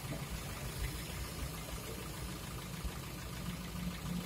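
Car engine idling, a steady low hum.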